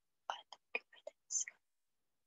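A person whispering a few quick syllables, ending in a hissing 's'-like sound.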